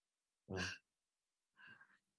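A single quiet spoken "wow" about half a second in; otherwise near silence.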